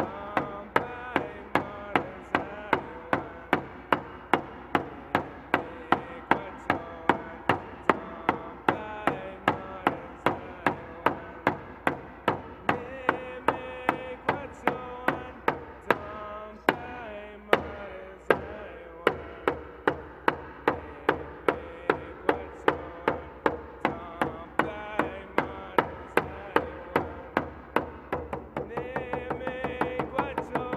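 A man singing a Cree honor song while beating a rawhide hand drum with a beater, steady strikes about two a second under his voice. Near the end the drumbeats quicken and soften.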